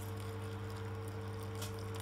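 Fish-bone stock poured from a pan through a fine-mesh metal sieve, the liquid splashing steadily into the strainer and the pan below, over a steady low hum.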